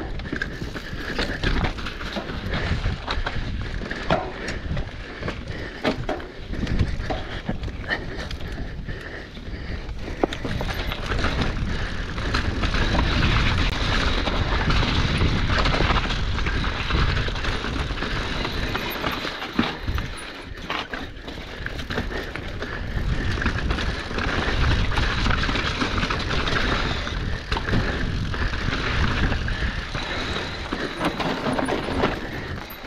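Mountain bike descending rocky dirt singletrack: tyres rolling and crunching over dirt and stones, with frequent knocks and rattles from the bike over rough ground, and wind rushing over the action camera's microphone.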